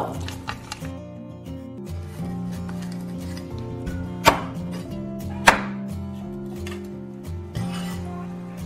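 A kitchen cleaver cutting grass carp and striking a bamboo cutting board: two sharp knocks, about four and five and a half seconds in, with a few light taps in the first second. Steady background music plays throughout.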